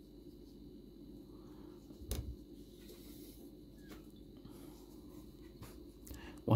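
Quiet room hum with a soft knock about two seconds in and a fainter tick near four seconds, from hands handling yarn and a crochet hook.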